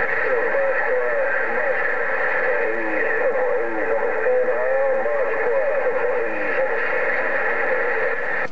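Another station coming in over a President HR2510 radio's speaker on 27.085 MHz: a thin, garbled voice that cannot be made out, under a steady hiss.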